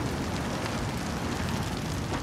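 A car fire: flames burning fiercely over a car's bonnet, making a steady, dense rushing noise.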